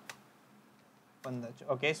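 About a second of near silence with one faint click near the start, then a man's voice speaking.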